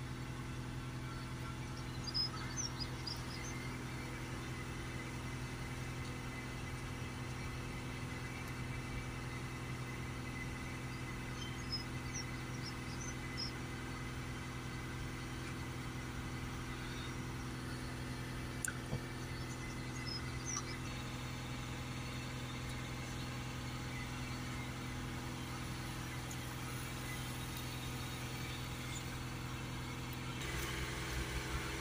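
Audi 3.0 TDI V6 diesel engine running steadily, held at about 2,500 rpm to push exhaust flow through a freshly cleaned diesel particulate filter while its differential pressure is read.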